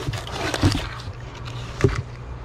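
Vacuum-sealed plastic meat packages and a cardboard box being handled: plastic crinkling and cardboard rustling, with one sharp knock near the end.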